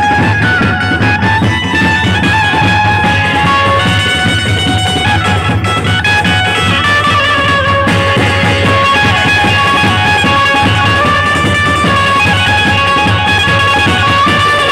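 Gondi dhumal band music played loud through a stack of horn loudspeakers: a sustained, plucked-string melody line over a steady low beat.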